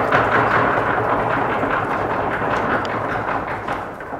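Audience applauding at the end of a lecture, a dense even clatter of clapping that starts to fade out near the end.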